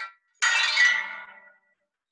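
Soundtrack playback: a single bright, chime-like musical note strikes about half a second in and rings out, fading over about a second, after the tail of a short earlier note at the very start.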